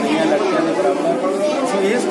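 Speech only: a man talking, with other voices chattering behind him.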